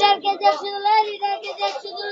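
A child singing in a high voice, holding drawn-out notes that bend slightly in pitch.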